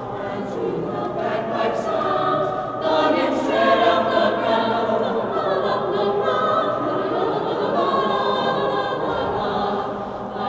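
A mixed high school choir of boys' and girls' voices singing in parts, swelling louder about three seconds in.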